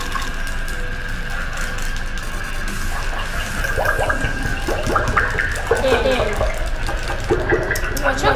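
A dog pawing and splashing at the water in its bowl, with background music and voices over it.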